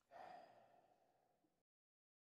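A man's breathy sigh close to the microphone, loudest at the start and fading over about a second and a half, then cut off suddenly.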